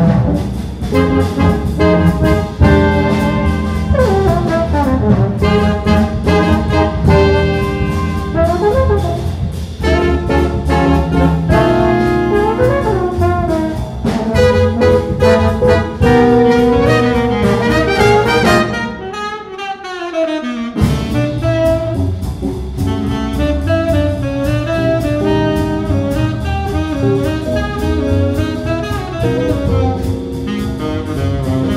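Live jazz band, with trumpet, tenor saxophone and trombone playing together over electric guitar, double bass and drums. The music briefly thins out about two-thirds of the way through, then carries on.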